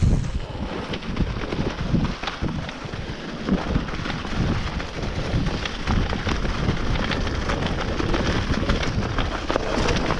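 Wind buffeting the microphone over the rolling noise of a Specialized Enduro mountain bike's tyres on a leaf-covered dirt trail at speed. Frequent knocks and clatters come from the bike going over bumps.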